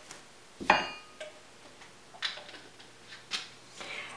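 Kitchenware being handled on a counter: one sharp clink with a brief glassy ring about a second in, then a few softer taps and knocks.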